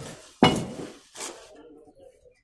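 Steel plastering trowels clinking against each other or the hawk: a sharp metallic strike with a brief ring about half a second in, then a lighter one a little over a second in.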